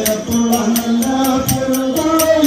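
Nanthuni pattu, a Kerala ritual song: one voice singing a slow, drawn-out melody over a steady beat of small hand cymbals, about four strokes a second.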